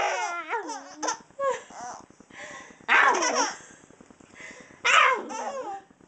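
A baby laughing in several bursts of high, gliding peals, loudest about three seconds in and again near the end.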